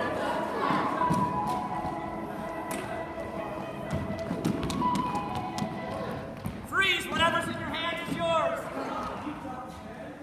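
Students playing a running game in a school gym: footfalls, taps and thuds on the hardwood floor, voices, and music playing in the background. About seven seconds in there is a burst of high-pitched squeals.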